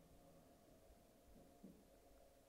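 Near silence: quiet room tone with a faint steady hum, and one brief faint low sound near the end.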